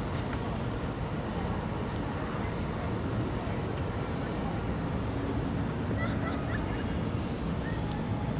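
Steady city street ambience: a low, even rumble of traffic with the faint murmur of passers-by.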